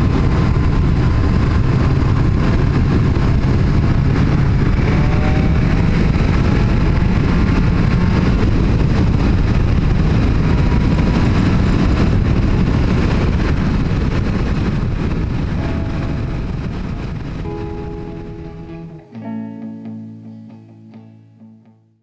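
Motorcycle riding noise, wind and engine on a helmet-mounted microphone, fading out over the last several seconds. Music with plucked notes runs under it and is left alone near the end.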